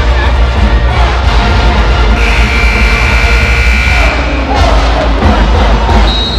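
Loud music with a heavy bass beat over the arena's public-address system, mixed with crowd chatter. A high note is held for about two seconds in the middle.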